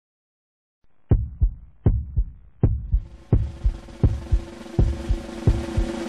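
Heartbeat sound effect heard as if through a stethoscope: low double beats start about a second in and speed up. From about halfway, a rising musical drone with a held tone swells under them.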